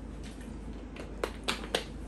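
Three quick, sharp clicks about a quarter of a second apart as a man finishes a long drink from a plastic bottle of green tea.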